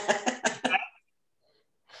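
A person laughing in a quick run of short, breathy bursts that stops about a second in, with a brief fainter laugh near the end.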